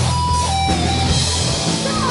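Live rock band playing, electric guitar to the fore over bass and drums, with a held high note that drops in pitch about half a second in.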